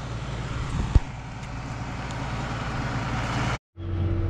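Farm tractor's diesel engine running steadily close by, with one sharp click about a second in. Near the end the sound drops out for an instant, then the engine comes back steadier, heard from inside the tractor cab.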